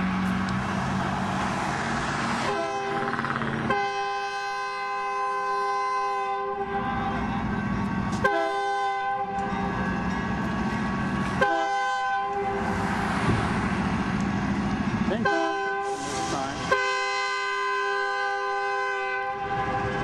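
Freight locomotive's multi-note air horn sounding four blasts, long and short, as the train approaches a street grade crossing: the crossing warning. A low rumble of the moving train runs under the horn.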